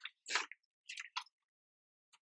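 Pages of a Hobonichi Cousin planner being turned by hand: a few short papery rustles, the loudest about a third of a second in.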